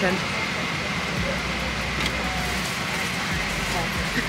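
Steady cabin noise of a jet airliner in flight: an even rush of engine and airflow, with a low rumble and a faint steady high tone.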